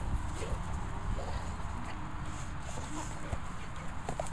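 An old Labrador making a few short, faint whines and squeaks, with scattered sharp clicks that fit crunching treats. A low wind rumble on the microphone is the loudest sound throughout.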